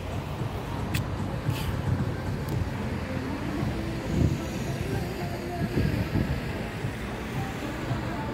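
Outdoor background noise: a steady low rumble with faint, indistinct voices, and two brief sharp sounds about a second and a second and a half in.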